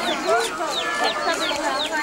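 Many chicks cheeping, short high peeps that fall in pitch, repeating several times a second, over the murmur of a crowd's voices.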